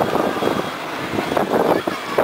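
Wind rushing and buffeting over the microphone of a rider swinging through the air on a high amusement ride, rising and falling unevenly, with riders' voices mixed in.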